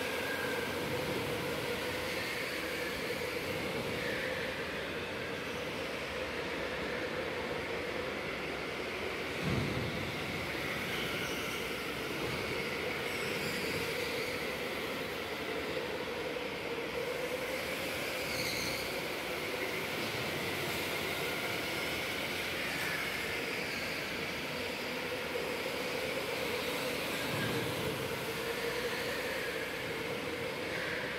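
Electric go-karts racing on an indoor track: a steady hum of motors and tyres, with faint high motor whines rising and falling as karts pass. A single thump about nine and a half seconds in.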